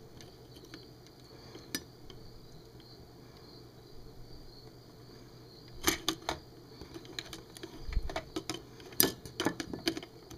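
Small metal pliers clicking and scraping against the circuit board and plastic case inside a bug zapper racket's handle, while trying to grip a resistor in a tight space. The taps come in clusters about six seconds in and again near the end, with a soft low bump about eight seconds in.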